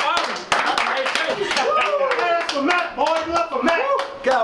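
A group of basketball players and staff clapping fast and in rhythm, about four claps a second, while shouting and whooping in celebration; the voices grow louder and the clapping thins out in the second half.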